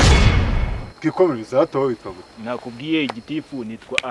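A sudden loud burst of rushing noise that fades away within about a second, followed by a man speaking.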